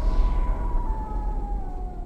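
Horror sound-design drone: a heavy low rumble with a single high tone that slowly sinks in pitch, easing off toward the end.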